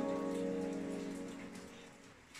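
Trap beat playing back from a DAW: a held keyboard chord rings out and fades away over about a second and a half, over a faint crackling hiss.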